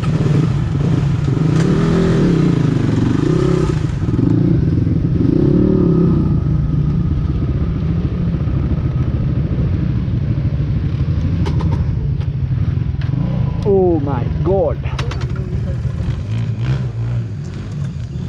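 Dirt bike engine running at low speed, its pitch rising and falling with throttle blips in the first few seconds, then settling to a steady low run as the bike rolls to a stop.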